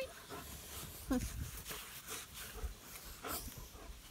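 A young German Shepherd-type dog being petted right at the microphone: fur rustling and handling noise, with a short falling whine about a second in.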